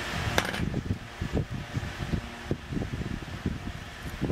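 Puffing on a tobacco pipe: a string of short, soft lip pops and smacks on the stem, several a second, after a single sharp click about half a second in.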